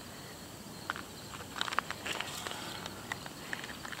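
Light, scattered crunches and ticks of gravel shifting underfoot, clustered around the middle, over a faint steady background insect chirr.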